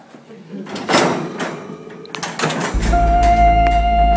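Knocks and rattling against wire-mesh lockers during a scuffle. About three seconds in, music starts: a single held tone over a deep bass.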